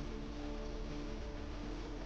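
Shop background music playing faintly over the store's sound system, with steady held notes.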